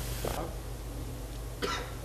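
Quiet room tone with a steady low hum, broken by two short, faint sounds, the one near the end a cough.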